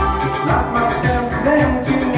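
Pop backing track with a steady beat, and a man singing live over it into a handheld microphone.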